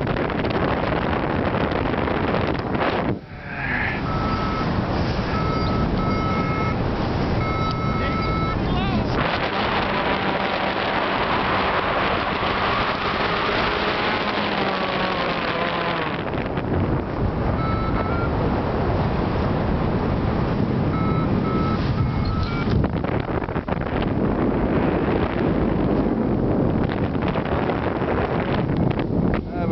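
Wind rushing over the microphone in flight. Short electronic beeps repeat in two stretches, first a few seconds in and again past the middle. The rush swells for several seconds in between.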